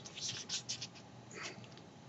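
Faint rustling of a printed sheet of paper being handled: a few short soft rustles in the first second and another about one and a half seconds in.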